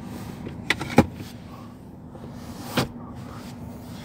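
Sharp plastic clicks and knocks from a rear-seat armrest's one-touch cup holder being handled, the loudest click about a second in and another near three seconds.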